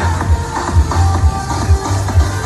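Loud electronic dance music with a heavy, pulsing bass beat.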